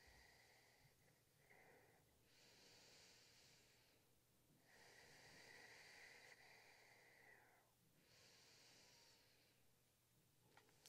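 Near silence, with a person's faint, slow, deep breathing: several long breaths in and out.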